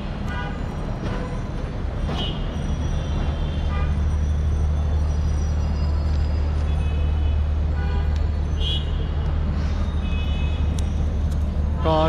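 City street traffic heard from an elevated viaduct: a steady low rumble of vehicles with several short horn toots scattered throughout.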